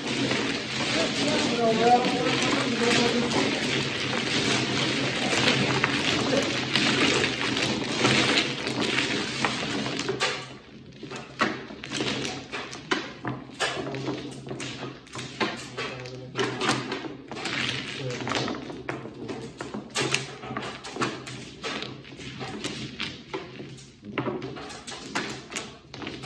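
Mahjong tiles being shuffled by hand on a padded table mat: a dense, continuous clatter for about the first ten seconds. After that come many separate clicks and taps as the tiles are gathered and stacked into walls.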